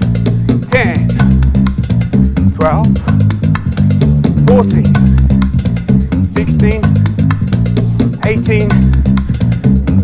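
Background workout music with a prominent bass line and a steady beat.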